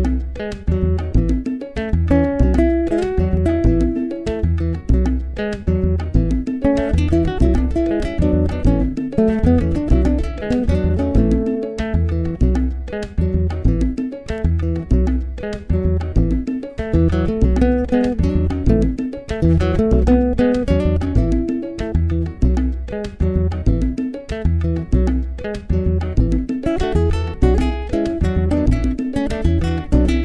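Classical nylon-string guitar playing an instrumental piece, notes and chords changing continuously, with a deep, evenly pulsing bass line beneath.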